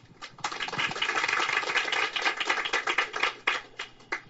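Audience applauding, starting about half a second in and thinning to a few last claps near the end.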